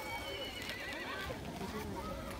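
A horse whinnying: one long, high, wavering call that falls in pitch, over the voices of people around the ring.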